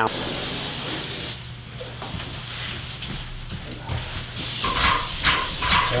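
Airless paint spray gun spraying semi-gloss paint onto a door: a loud, even hiss that drops away after about a second and starts again about four and a half seconds in.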